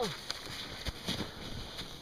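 A man groans "oh" with a falling pitch at the start, then his hands and knees crunch into snow and his puffy jacket rustles in short, irregular crackles as he crawls up a snowy slope.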